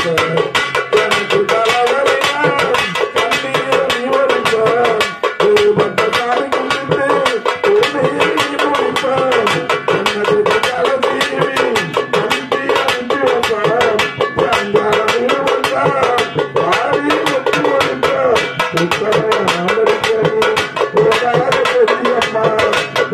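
Live Tamil folk song: a man's voice singing over fast, steady beating on two hand drums, a small hand-held frame drum and a rope-laced barrel drum.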